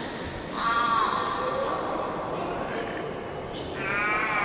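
Beluga whale calling in air with its head raised above the water: two calls that bend in pitch, the first about half a second in and lasting about a second, the second beginning near the end.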